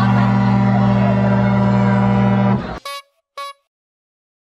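A loud, steady low horn blast held for about three seconds over fairground ride music, then cut off suddenly, followed by two short higher beeps.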